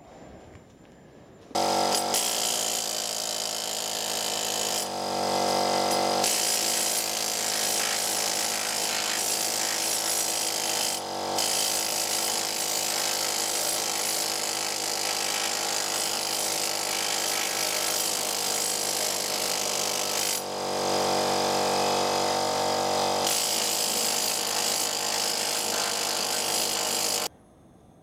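Handheld power tool working on the steel boiler plate to take off flaky surface rust. It starts about a second and a half in and runs steadily, with a few brief dips as it is eased off, and stops just before the end.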